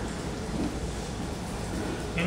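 Steady background noise with a low rumble, room tone between spoken phrases; no distinct handling sound stands out.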